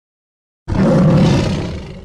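Tiger roar sound effect, starting abruptly under a second in, loud and rough, then fading steadily toward the end.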